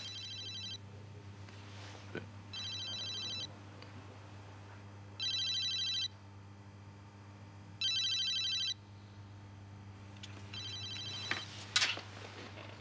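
Electronic telephone ringer warbling in five short rings about 2.6 s apart, unanswered. There is a sharp click just before the end.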